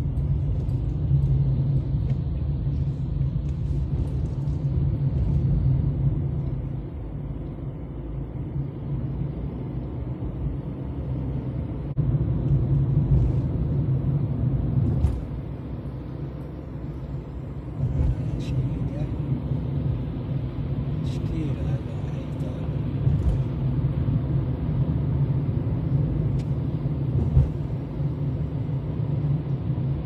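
Steady low rumble of a car's engine and tyres on a highway, heard from inside the moving car; it swells and eases over stretches of a few seconds.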